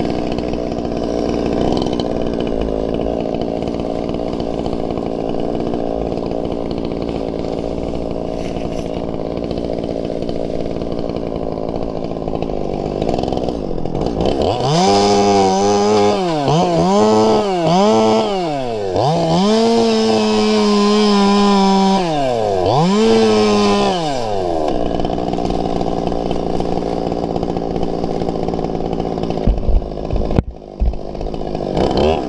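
Small two-stroke chainsaw running steadily. About halfway through it is revved up and down about five times, with one longer held run, as it cuts into a palm's skirt of dead fronds. It settles back to a steady run near the end.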